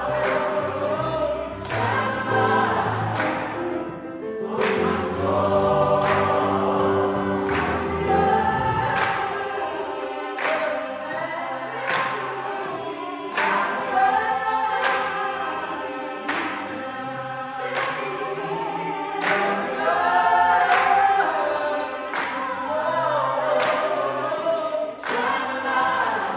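Mixed choir singing a gospel song with piano, the singers clapping on the beat about once a second. Low bass notes carry the first half and drop away about nine seconds in.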